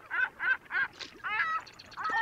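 A bird calling in a rapid series of short, pitched calls, about four a second.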